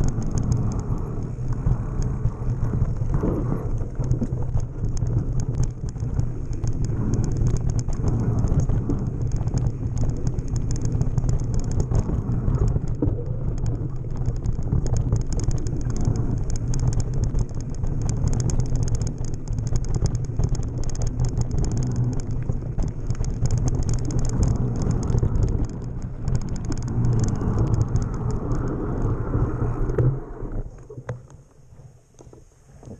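Mountain bike descending a dry, bumpy dirt trail at speed, heard from a camera on the bike: a steady low rumble of wind and rolling tyres with a constant clatter of small knocks and rattles from the bike over the rough ground.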